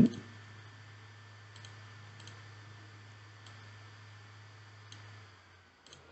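A few faint computer mouse clicks, spaced irregularly a second or so apart, over a low steady hum that fades out near the end.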